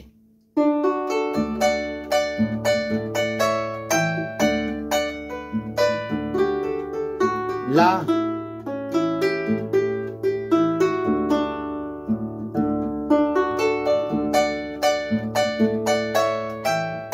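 Harp played by hand after a brief pause: a passage of plucked melody notes over a simple plain bass line whose held bass notes change every second or so. A quick rising sweep comes about halfway through.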